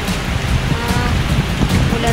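Hot spring water pouring from a wooden spout into a stone foot-bath basin, a steady splashing rush.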